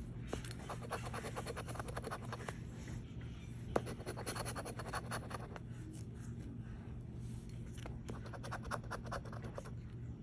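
A metal coin scraping the latex covering off a scratch-off lottery ticket in three spells of quick, rasping strokes. There is one sharp tap a little before four seconds in.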